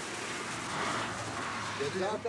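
Indistinct voices over a rushing noise that swells in the middle; clear speech starts just before the end.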